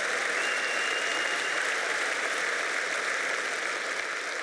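A large audience applauding, a steady wash of clapping that eases slightly near the end.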